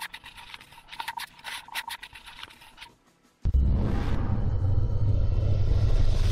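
A hand rubbing and scraping against the camera microphone for about three seconds. After a brief quiet, a loud music sting with a deep bass swell starts suddenly.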